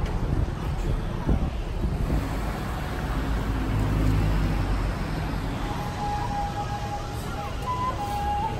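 City street traffic noise: a steady low rumble of passing vehicles. From about six seconds in, a few faint held tones sit above it.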